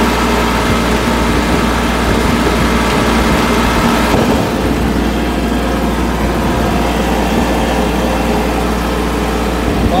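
Tractor engine running at a steady speed while the tractor drives along a road: a constant drone that does not rise or fall. A man's voice starts just at the end.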